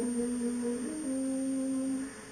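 Wind band playing a slow passage of held notes, moving to a new chord about a second in.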